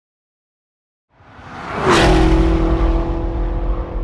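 Production-logo sound effect: after a moment of silence a whoosh swells in and peaks about two seconds in, then gives way to a low rumble and a held tone that slowly fade.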